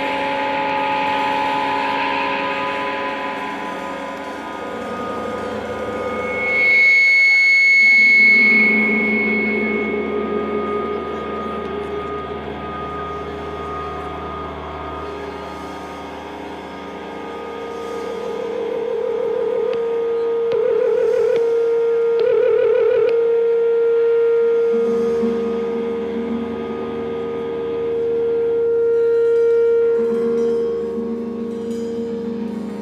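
Electric guitar played through effects pedals: long, echoing held notes and drones that swell and overlap, with no drums. A bright high note rings out about seven seconds in, and a steady pulsing note holds through the second half.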